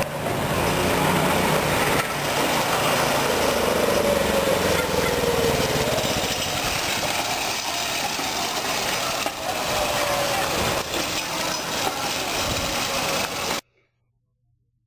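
Hybrid go-kart's 6.5 hp lawnmower-type single-cylinder gas engine running as the kart drives, its pitch rising and falling with speed. The sound cuts off abruptly near the end.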